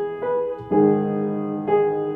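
A 100-year-old upright piano being played: slow, sustained chords struck about once a second, the loudest and fullest, with low bass notes, coming just before the middle.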